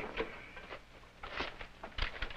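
Faint rustling and light handling of papers and small items on a desk while someone searches through them, with a short rustle about a second and a half in, over a steady low hum.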